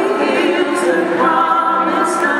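Female vocal group singing in close harmony, several voices holding long notes together and shifting to new pitches partway through.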